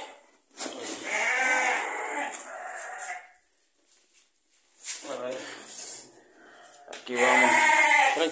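Hungry ewes bleating for their feed: a long wavering bleat about a second in, and a shorter one around five seconds in.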